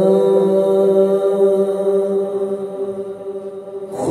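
A man singing a devotional chant into a microphone, unaccompanied, holding one long note at a steady pitch that fades near the end.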